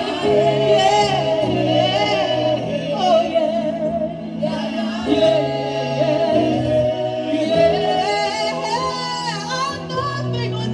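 A gospel worship song sung by a small group led by women's voices, with the pitch sliding and wavering, over held low accompaniment chords that change about every second.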